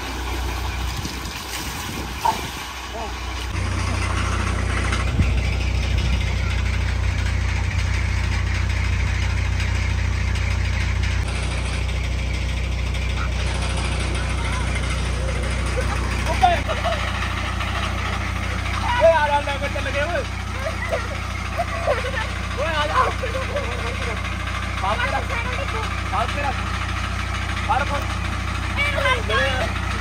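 A steady low engine or motor hum sets in a few seconds in and carries on throughout. Short, scattered vocal-like sounds join it in the second half.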